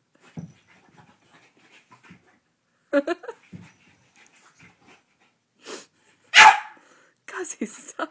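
French bulldog making play noises: panting, with short barks or yelps in separate bursts. The loudest burst comes about six and a half seconds in.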